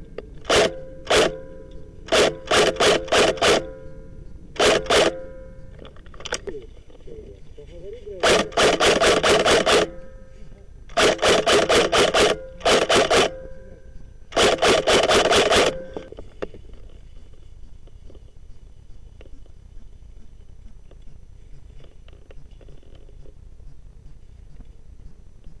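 Airsoft G36 electric rifle firing close up: a couple of single shots, then rapid strings of shots, each a quick run of sharp mechanical clacks. The firing stops about two-thirds of the way through.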